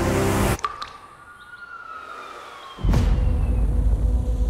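Film-trailer soundtrack: the music cuts off suddenly about half a second in. A quiet stretch follows, with a faint tone gliding slowly downward. Near three seconds in, a loud deep bass boom hits and holds.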